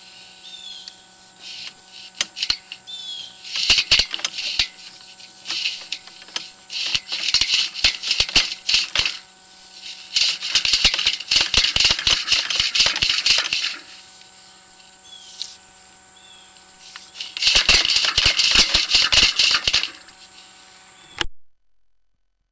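Sewer inspection camera push rod being fed by hand into the line, rattling and clicking in four bursts of a few seconds each over a steady faint hum. The sound cuts off suddenly near the end.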